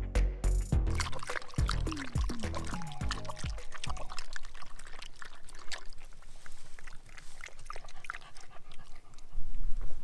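Upbeat background music with a beat for the first four seconds, then water poured from a portable dog water bottle into its cup and a dog lapping it up with quick irregular laps.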